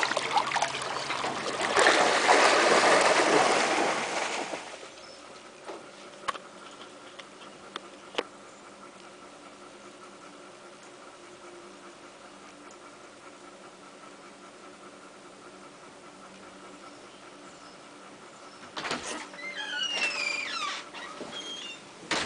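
A vizsla and a pudelpointer splashing as they swim for the first few seconds. After that comes a long quiet stretch with a faint steady hum and a couple of single clicks. Near the end there is a short burst of high, gliding animal squeaks.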